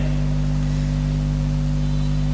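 Steady low hum made of several constant low tones, with no change in level. It is the same hum that runs under the lecture's speech.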